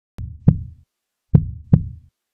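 Deep double thumps like a heartbeat, two beats about a third of a second apart, repeating about every 1.2 seconds: a heartbeat effect opening the background music.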